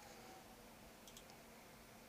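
Near silence: room tone, with a few faint clicks a little after a second in.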